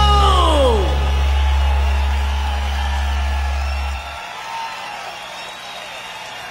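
A rock band's final held chord dives sharply down in pitch in the first second, while a deep low note rings on and cuts off abruptly about four seconds in. Audience cheering and whoops follow.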